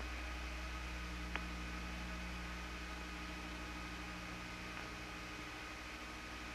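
Steady low electrical hum under an even hiss, with a single sharp click about one and a half seconds in.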